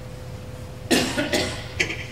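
A person coughing, a quick run of two or three coughs starting about a second in, over a faint steady hum.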